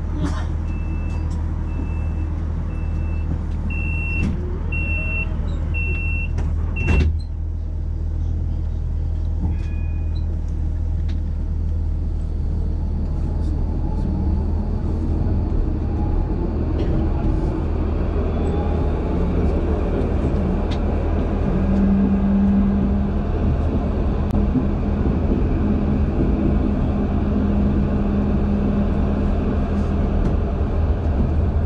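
Tram door warning beeps, a string of short high beeps for about seven seconds, ending in a sharp knock as the doors shut. The tram then pulls away, its electric traction motors' whine rising in pitch over a steady low hum.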